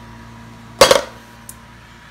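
A hand-decorated wooden Collins of Texas box purse being opened: one sharp wooden clack a little under a second in, then a faint click.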